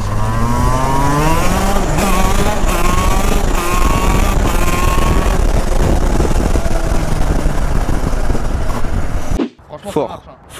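Shifter kart's two-stroke engine under hard acceleration. Its pitch climbs and drops back with each of several quick upshifts in the first five seconds, then it runs at steady high revs with wind noise on the microphone until the sound cuts off suddenly near the end.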